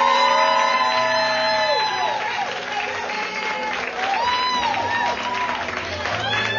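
Small audience applauding, with drawn-out whoops and cheers from a few voices, one near the start and another about four seconds in.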